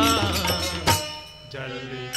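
Gurbani kirtan music. A wavering held note fades at the start, a single sharp stroke falls about a second in, and after a brief dip steady held tones sound near the end.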